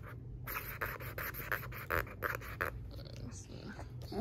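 Marker scribbling back and forth on a paper coloring sheet: quick rasping strokes several times a second, stopping a little past halfway.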